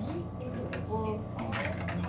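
Plastic blister packaging of a die-cast toy car being handled and pulled open: crinkling with a few short sharp clicks, the loudest about one and a half seconds in.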